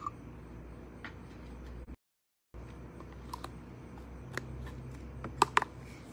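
Light handling noise: a few sharp clicks and taps, mostly in the second half, over a low steady rumble. The sound cuts out completely for about half a second around two seconds in.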